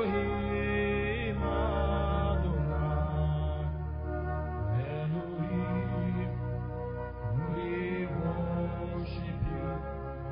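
Slow worship music: sustained keyboard chords over a steady bass, with a voice chanting softly and wavering in pitch over them.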